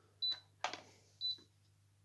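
Tefal multicooker running with its heater switched on and the bowl empty. Faint short high ticks come about once a second, which fits the relay switching that was heard at start-up, and a couple of soft brushing sounds come from a hand at the bowl.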